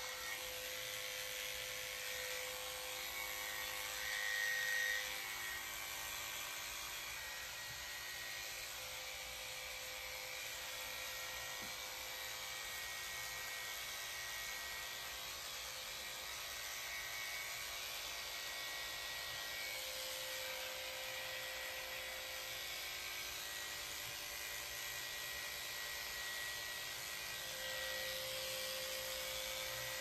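Cordless electric dog clipper running steadily as it cuts a toy poodle puppy's coat, a steady motor whine with a brief swell a few seconds in.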